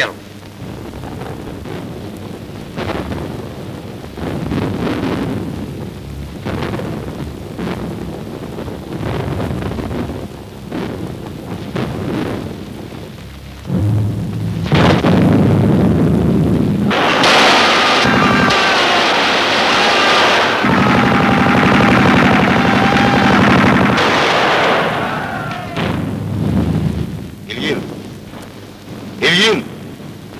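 Battle sound effects on an old film soundtrack: gunfire and explosions. It starts as scattered shots, turns much louder and denser about halfway through, stays loud for several seconds, then fades near the end.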